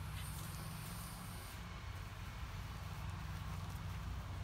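Steady low rumble of outdoor background noise, with a faint high-pitched hiss over the first second and a half.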